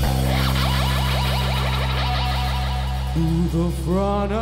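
Rock band's electric guitars and bass holding a ringing chord at the end of a song, with a run of short rising guitar slides over it and then a bending guitar note near the end.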